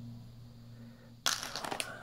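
Crinkling of a shiny plastic candy bag being picked up and handled. It starts suddenly a little over a second in.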